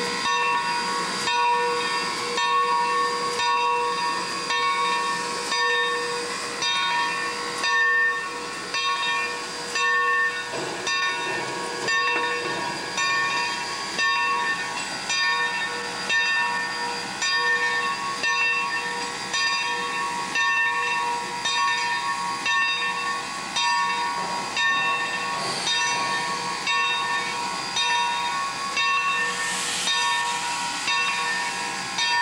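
Steam locomotive No. 30, a 2-8-2 Mikado, hissing steam, with a regular beat of about one and a half pulses a second and steady high tones over it.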